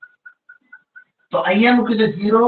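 A quick run of short, high chirps, all on one pitch, about four or five a second. They stop after about a second and a half.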